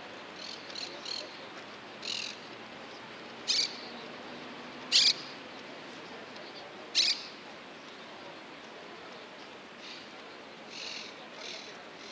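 Birds calling in short high chirps, with three louder, harsh calls in the middle about one and a half to two seconds apart, over a faint steady background hum.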